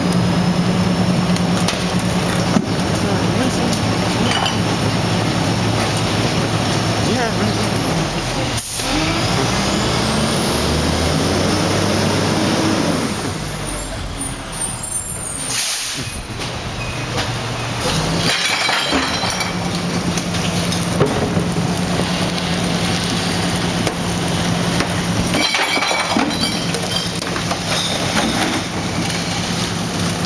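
Rear-loading garbage truck's diesel engine running at a raised, steady speed, then revving up and back down as the truck moves forward. An air-brake hiss comes about halfway through, and then the engine settles into a steady run again.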